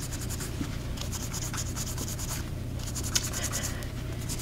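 A lint-free wipe soaked in nail cleanser rubbed quickly back and forth over cured gel nails: a run of soft, rapid scratchy strokes, wiping off the sticky inhibition layer.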